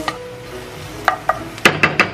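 A wooden spoon stirring onions and pork belly in a nonstick frying pan, with a few sharp knocks of the spoon against the pan near the end.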